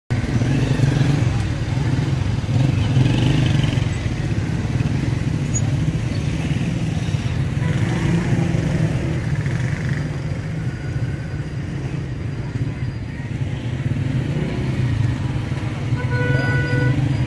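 Busy street noise: motorcycle engines running steadily under the chatter of a crowd of men.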